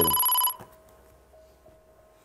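Quiz-show electronic beep, a steady high tone that cuts off suddenly about half a second in, sounding as a bought letter is revealed on the answer board. A faint steady hum remains after it.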